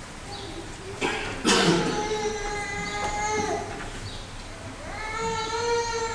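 Liturgical chant of long, steadily held notes in a reverberant church. One phrase starts sharply about a second and a half in and slowly falls away. A second rises in near the end.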